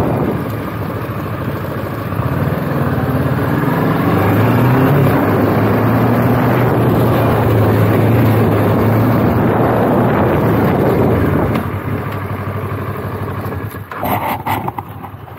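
Motorcycle engine running while riding, picking up revs a few seconds in, holding a steady engine speed, then easing off near the end as the rider closes the throttle.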